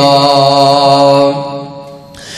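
A man singing a Punjabi devotional verse, holding one long, steady note at the end of a line. The note fades away in the last half second.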